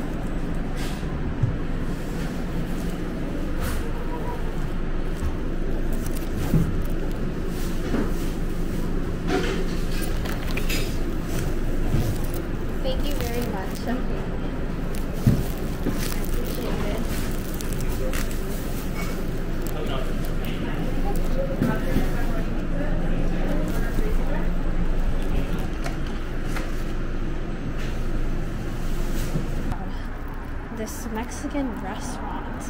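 Indistinct background voices over a steady low hum of restaurant room noise, with a few short knocks and rustles from handling an insulated delivery bag.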